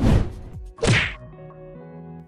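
Two sharp hit-and-swish transition sound effects about a second apart, the first at the very start and the second about a second in, each with a falling tail, over soft background music.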